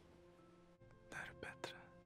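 Near silence, with a faint held music bed and a few short, faint whispered words in the second half.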